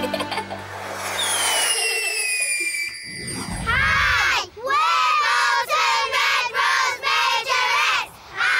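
The tail of a children's TV theme jingle ends with falling swoosh effects. About three and a half seconds in, a group of young girls starts shouting a chant in unison: short, loud shouted syllables, about two a second.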